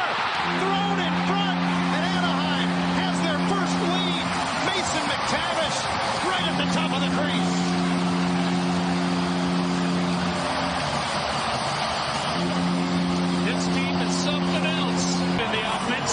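Hockey arena goal horn sounding three long, low blasts of about four seconds each, over a loudly cheering crowd: the signal of a home-team goal.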